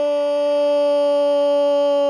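A football commentator's goal call: a man's voice holding the word "gol" as one long, loud shout at a steady pitch.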